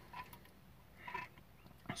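Quiet, with a few faint clicks from an aluminium energy-drink can being handled and turned in the hand.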